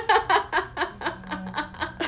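A woman laughing in a run of short, evenly spaced pulses, about five a second, that fade over the two seconds.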